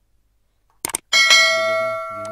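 A short click, then about a second in a loud bell-chime sound effect rings, struck twice in quick succession and slowly fading; it goes with an animated subscribe-and-notification-bell button.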